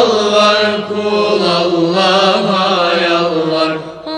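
A group of voices chanting together in a Turkish Sufi hymn (ilahi), holding one long phrase that begins abruptly and fades out near the end.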